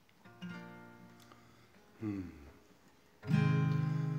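Acoustic guitar opening a song: one strummed chord about a quarter-second in that rings and fades away, then fuller, louder strumming that starts a little after three seconds.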